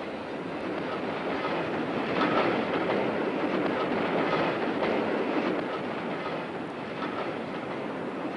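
Freight wagons rolling slowly over the track behind a shunting locomotive, wheels running on the rails with some clatter.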